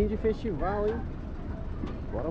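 Voices talking during the first second over the steady low rumble of a school bus engine running.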